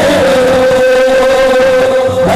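Men's voices chanting a devotional durood, holding one long, steady sung note without a break.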